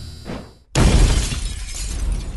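Music tails off, and about three-quarters of a second in a sudden loud crash effect hits, with a deep rumble and crackle that die away slowly.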